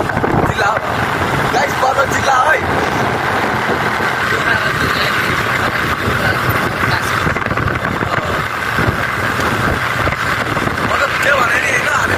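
Motorcycle riding along at road speed: steady engine and road noise with wind rushing over the phone's microphone.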